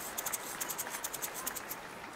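KlangBruder hand shaker shaken quickly, its bead filling giving a crisp, rapid rattle that stops shortly before the end. The shaker's filling can be changed through a small screw to alter this sound.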